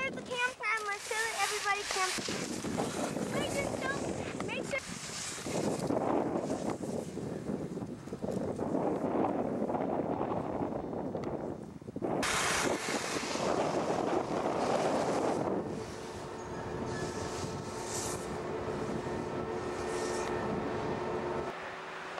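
Wind rushing over a camcorder microphone while skiing down a snowy slope, in swells that rise and fall with several abrupt changes. A faint steady hum joins near the end.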